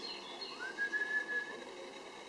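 Small birds chirping, with one clear whistled note that rises and then holds for about a second.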